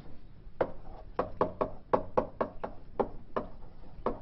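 Chalk tapping and clicking against a blackboard as equations are written: about a dozen quick, irregular taps.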